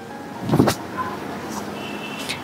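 Cloth rustling as a saree's fabric is handled and lifted, with a brief louder swish about half a second in.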